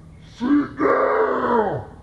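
A person's loud wordless vocal outburst: a short cry, then a drawn-out groan that drops in pitch at the end.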